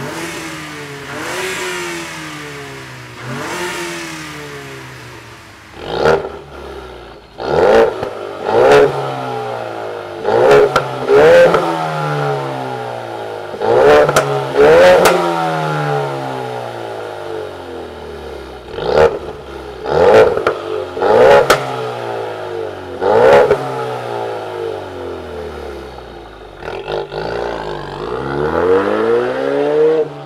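2015 Mustang's 2.3 L EcoBoost turbo four-cylinder being revved from idle: two revs on the stock exhaust, then a quick series of loud revs, each falling back to idle, through a Borla 3-inch catless downpipe and Borla ATAK cat-back exhaust. Near the end the car pulls away, its engine note rising as it accelerates.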